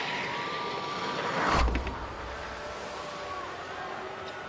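Ski jumper's skis running down the iced inrun tracks, a steady hiss that swells to a loud whoosh with a low rumble about a second and a half in as the jumper rushes past, then settles to a softer rush of air as the jumper flies.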